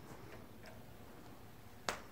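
Hushed room tone during the pause after a studio countdown, broken near the end by one sharp click.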